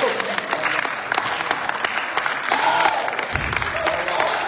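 Irregular hand clapping, with a man's voice breaking in briefly in the second half.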